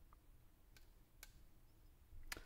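Near silence: room tone, with two faint clicks about half a second apart.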